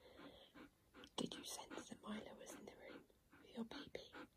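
Alaskan malamute panting softly in quick, regular breaths, with a sharp click a little over a second in.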